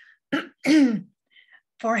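A woman clearing her throat twice: a short catch, then a longer voiced clear that falls in pitch.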